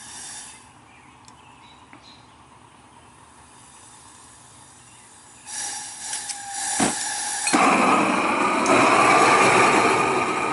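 Propane weed torch being lit: gas starts hissing from the wand about five seconds in, a sharp click comes just before 7 s, and from about 7.5 s the burner flame runs with a loud, steady rushing roar.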